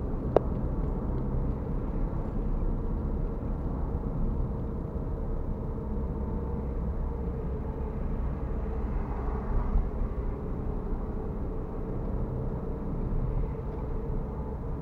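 Car interior road noise while driving: a steady low rumble of engine and tyres, with one sharp click just after the start.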